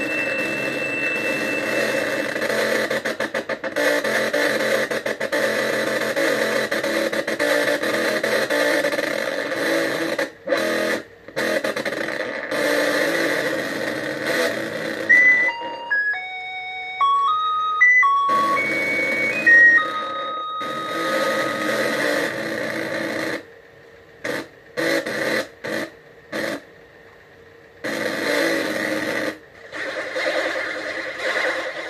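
Electronic synthesizer music: a dense, buzzing noisy texture, with a melody of single beeping tones stepping up and down about halfway through. Near the end it turns into short chopped bursts with gaps between.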